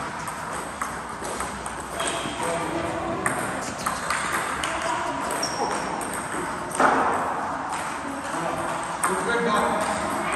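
Table tennis balls clicking off paddles and the table in quick, irregular strikes during a doubles rally in a large hall, with one louder knock about seven seconds in.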